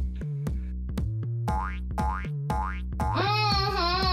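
Playful background music with a steady bass line and beat. Two rising boing sound effects come about midway, and a wavering, wobbling tone comes in near the end.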